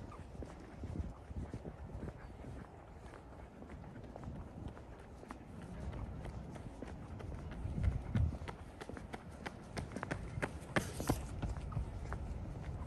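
Footsteps of a person walking at a steady pace on a paved path, with sharper clicking steps in the last few seconds.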